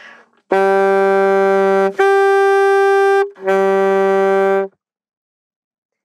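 Alto saxophone playing three held notes in an octave exercise: a low note, the same note an octave higher, then the low note again. Each note lasts a little over a second, and the playing stops just before five seconds in.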